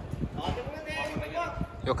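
Men's voices talking in the background, quieter than the close speech around them, over irregular low thumps and rumble at the microphone.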